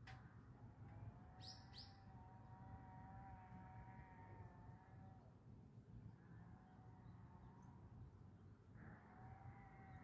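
Faint outdoor ambience: a small bird gives two quick, high, downward-sweeping chirps about a second and a half in, over a constant low rumble and a faint steady humming tone that fades out and returns near the end.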